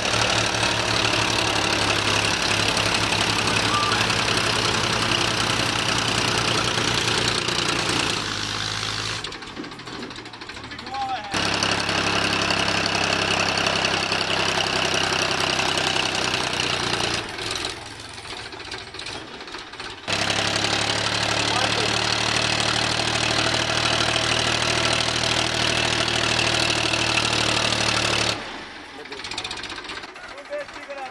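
Powertrac 434 DS diesel tractor engine running hard under load, pulling a loaded double-axle dumper trailer up out of loose sand. The engine sound cuts away abruptly about 8, 17 and 28 seconds in, coming back after a few seconds the first two times.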